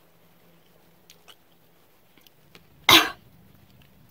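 A woman quietly chewing a sour grape, with faint mouth clicks, then a sudden loud, breathy cough-like outburst about three seconds in: her reaction to the sourness of the grape.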